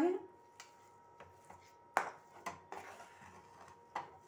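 Steel spatula knocking and scraping against a non-stick kadhai as mashed potato filling is stirred: a handful of light, irregular knocks, the loudest about two seconds in.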